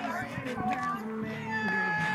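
High-pitched voices of softball players calling out in drawn-out, sing-song cheers, with one long held call near the end.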